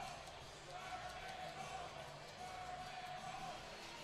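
Faint ice-arena background noise, with a steady faint tone held through most of it.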